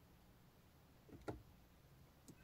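Near silence in the car cabin, broken once by a short soft click about a second and a quarter in, from the iDrive controller being worked to move through the dashboard menu.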